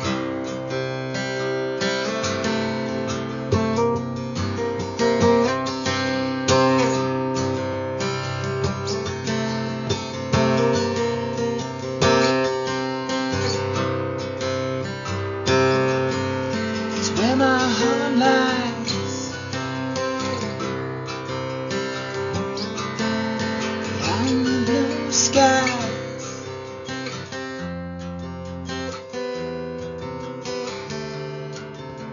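Guitar playing an instrumental stretch of a song, held chords ringing under a melody line that bends in pitch about halfway through and again a little later; it gets softer over the last few seconds.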